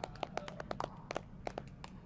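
Faint scattered hand clapping, a quick irregular patter of claps that thins out toward the end.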